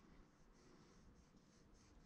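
Faint scratching of a small metal sculpting tool on modelling clay, in short repeated strokes.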